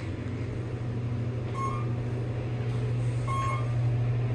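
KONE machine-room-less traction elevator cab descending, with a steady low hum of the ride throughout. Two short high beeps, about a second and a half apart, come as the car passes floors.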